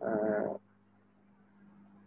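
A single short vocal sound, about half a second long, at the very start, followed by a faint steady low hum.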